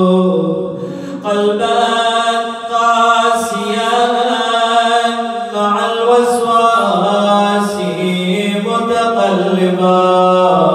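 A man chanting an Arabic supplication into a handheld microphone, in long drawn-out melodic notes that slide between pitches, with brief pauses for breath.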